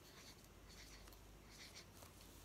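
Faint scratching of a felt-tip marker writing on paper, in short strokes.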